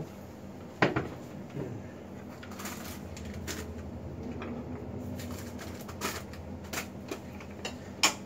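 A sharp click about a second in, then scattered lighter clicks and knocks over a low steady hum.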